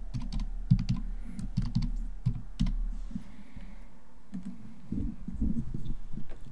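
Typing on a computer keyboard: a run of irregular keystrokes over the first half, then a short pause and a few louder knocks near the end.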